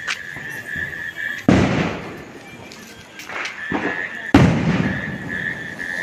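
Diwali firecrackers going off twice, loud sudden bangs about three seconds apart, each trailing off in a rumble. A thin steady high whistle runs between the bangs.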